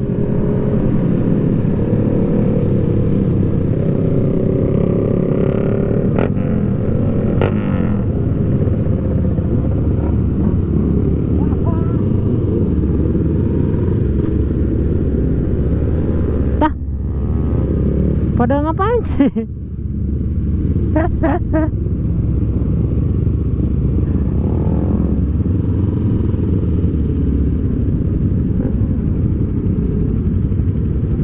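Sport motorcycle being ridden, heard from a camera on the bike: a steady rush of wind on the microphone with the engine running underneath. The sound drops briefly about two-thirds of the way through.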